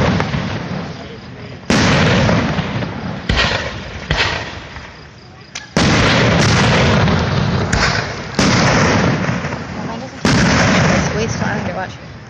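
Aerial firework shells bursting one after another, about eight loud booms, each followed by a long rolling echo that fades over a second or two.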